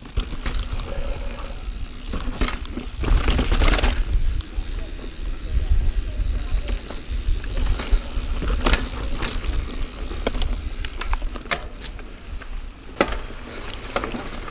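Niner Jet 9 RDO full-suspension mountain bike ridden along a dirt singletrack: tyres rolling, with scattered sharp rattles and knocks from the bike over the rough trail. A deep, uneven wind rumble sits on the microphone throughout.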